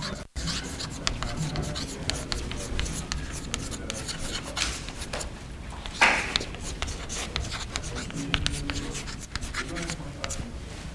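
Chalk writing on a blackboard: a run of quick scratches and taps as a heading is chalked up. One louder burst of noise comes about six seconds in.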